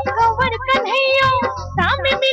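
Rajasthani devotional folk song: a high-pitched voice singing melismatic phrases over instrumental accompaniment with a steady held note and a low percussion beat.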